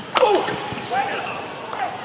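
A badminton racket strikes the shuttlecock once, sharp and loud, at the end of a rally. Short squeals that fall in pitch follow on the indoor court.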